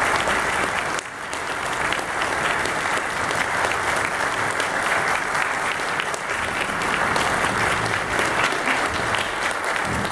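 Applause from the audience and orchestra players, steady and dense, with a slight dip about a second in.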